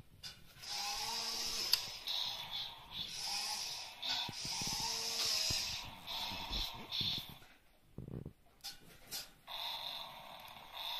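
Toy forklift's small electric motor and gearbox whirring in several bursts with short pauses, as it is driven and its forks moved by remote.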